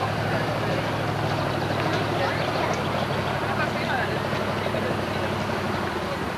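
A motorboat's engine running at a steady pitch as the boat moves along the river, with people talking in the background.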